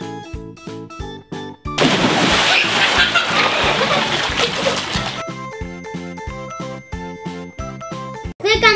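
A person jumping into a swimming pool: a loud splash starts suddenly about two seconds in, and water sloshes and churns for about three seconds. Background music with a steady, regular beat plays throughout.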